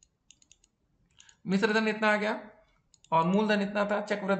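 A man speaking Hindi in two short phrases, the first about one and a half seconds in and the second from about three seconds in. Before he speaks there are faint ticking clicks from a stylus writing on a tablet.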